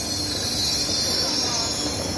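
Passenger train rolling along the platform with a steady high-pitched metallic squeal from its wheels over a low rumble.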